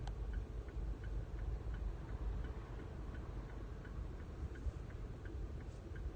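A car's turn-signal indicator ticking steadily, a little under three ticks a second, over the low, steady rumble of the car's cabin.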